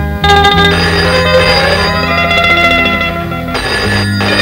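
Film background score: a plucked-string melody over held low notes.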